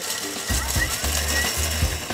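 Thermomix food processor running, its blade grinding broken-up baked crab biscuit with sugar into a powder: a harsh, noisy whir with a low motor drone that comes in about half a second in. Background music plays under it.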